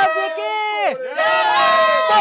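Loud yelling, one drawn-out cry sweeping down in pitch and then back up, over a steady droning tone.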